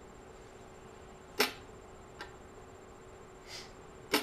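Hammer striking a hand-held cold chisel to cut sheet-steel lock face plates on a stake anvil, scoring most of the way through the plate. One sharp metallic blow about a second and a half in, then a lighter tap just under a second later.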